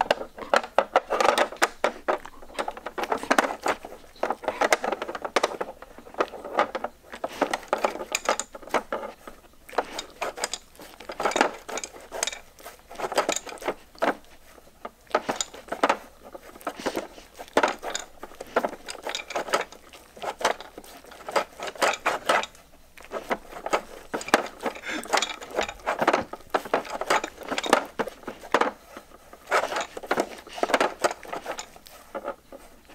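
Plastic pieces of a Trixie Move2Win level-3 dog puzzle board clicking and rattling irregularly as a Samoyed noses and licks at its sliders and cones to get treats, with a few brief lulls.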